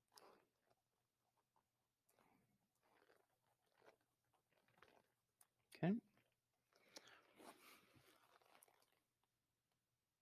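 Very faint scrubbing of a whiteboard eraser rubbed in short strokes across a dry-erase board, with a pause in the middle.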